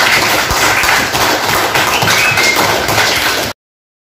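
Applause from a classroom of schoolchildren, many hands clapping at once, cutting off suddenly about three and a half seconds in.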